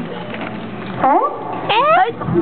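A woman's voice making two short, wordless sounds that rise in pitch, one about a second in and one near the end, after a quieter first second.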